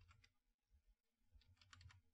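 Faint computer keyboard keystrokes, a few taps just after the start and then a quick run of several in the second half, as a line of code is typed.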